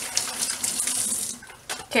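Kitchen sink faucet running as hands are rinsed under it after handling raw chicken, a steady hissing splash that is shut off about a second and a half in.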